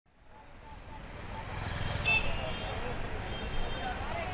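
Street noise fading in: a motor scooter's engine running as it rides past, with murmuring voices from a standing crowd. A brief high-pitched beep sounds about two seconds in.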